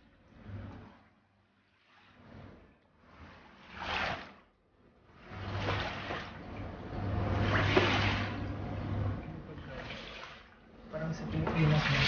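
Rubber floor squeegee pushing a shallow layer of floodwater across a smooth painted floor, in repeated swishing, watery strokes that swell and fade, the longest one through the middle.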